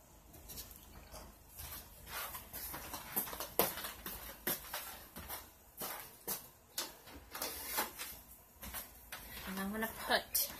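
Irregular knocks and clatters, one or two a second, of household objects being handled and set down while a plant and its dish are moved.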